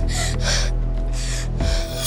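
A person breathing in four short, sharp gasps, over steady background music.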